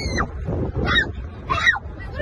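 A person's voice giving two short, high-pitched squeals about two-thirds of a second apart, each falling in pitch, over a low rumble inside a car cabin.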